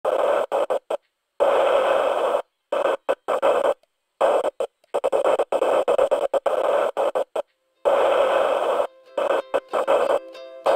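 Static-like noise cut on and off in abrupt, uneven bursts with dead-silent gaps between them, as the opening of a track. Near the end a plucked-string tune comes in.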